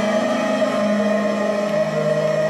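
School choir of young teens holding long, steady notes together.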